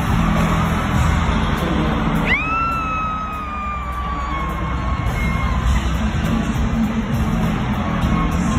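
Live concert music played loud through an arena sound system, with a steady low bass under a dense wash of sound. A little over two seconds in, one high tone swoops up sharply, then slowly sinks and fades over about three seconds.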